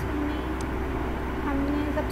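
A woman's voice making brief hesitant vocal sounds between words, over a steady low background hum, with one faint click about a third of the way in.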